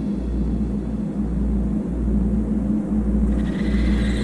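A low, sustained synth bass drone with a steady held tone above it and no drums: a breakdown in an electronic trance track.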